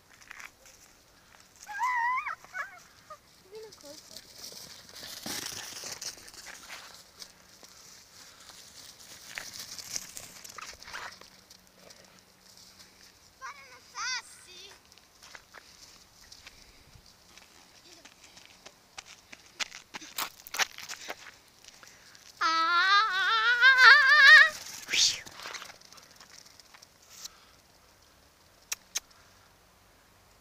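A person's voice calling out in long, wavering calls, the loudest a drawn-out call rising in pitch about two thirds of the way through, with shorter calls earlier, over a faint outdoor hiss.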